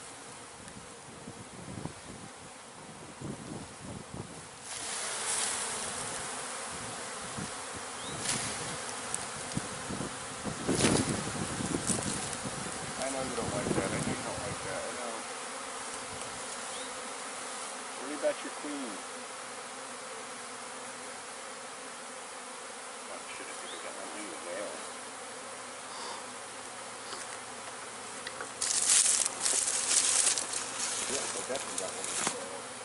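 Honey bee swarm in the air: the steady, dense hum of many flying bees, growing louder about five seconds in. A few brief knocks and rustles come through around the middle.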